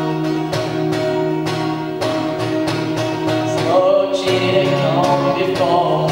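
Acoustic guitar strummed in an even rhythm, with a young male voice starting to sing over it about two-thirds of the way through.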